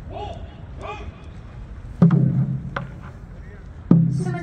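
Large Korean barrel drum struck: a heavy low beat about halfway in, a lighter stroke just after, and a second heavy beat near the end, each ringing briefly. People's voices are heard before the first beat.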